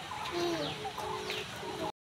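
Birds calling in a string of short notes, some held level and some falling in pitch; the sound cuts off abruptly just before the end.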